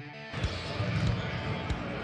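Background music cuts off just after the start, giving way to live arena sound: several basketballs bouncing on a hardwood court during warm-ups, over the murmur of a crowd.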